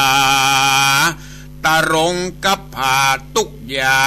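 A single voice chanting Northern Thai verse in a melodic recitation: one long note held steady for about a second, then after a short pause several shorter sung phrases that rise and fall.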